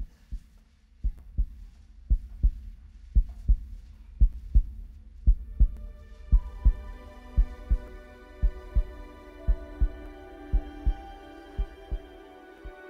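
Heartbeat sound effect played over a sound system: a slow double thump about once a second, fading near the end. A sustained ambient music chord comes in about halfway through and swells.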